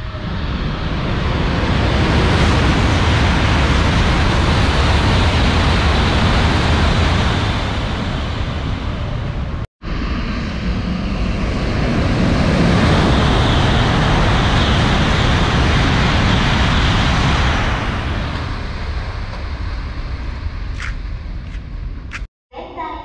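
Shinkansen bullet trains passing through the station at high speed: a loud, steady rush of noise that builds, holds for several seconds and eases off, twice, with a sudden break between them about ten seconds in.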